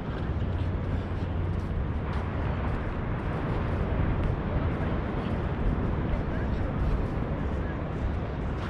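Wind buffeting a GoPro's microphone: a steady, rumbling low noise with no pauses.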